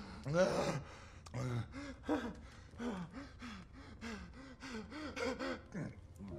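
A man gasping for breath in short, strained gasps with a groan in each, about three a second and strongest at the start, as poison takes hold of him.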